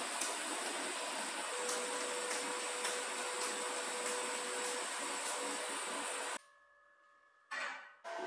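TIG welding arc hissing steadily with faint regular ticks a little under two a second. It cuts out abruptly about six seconds in and comes back briefly near the end.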